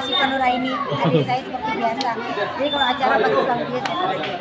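Several people talking at once in a crowded room: overlapping chatter.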